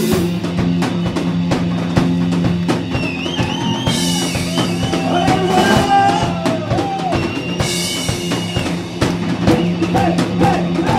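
Rock band playing live: a drum kit beat with kick and snare under steady bass notes, joined about three seconds in by a lead melody with wavering, bending pitch.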